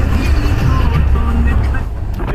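Steady low rumble of a 4x4's engine and drivetrain heard from on board as it crawls along a rough dirt track, with voices over it; the rumble drops away near the end.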